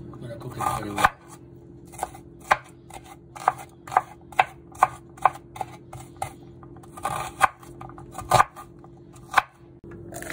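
Chef's knife chopping an onion on a bamboo cutting board: the blade strikes the board in sharp taps about twice a second, with a few longer, louder cutting strokes near the start and near the end.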